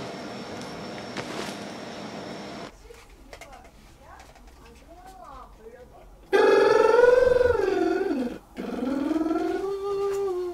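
A male singer's voice in a vocal booth, singing long held notes that slide up and down in pitch, starting loudly about six seconds in with a brief break before a second held note. Before it, a steady room hum of air conditioning, then a few seconds of quiet with a faint voice.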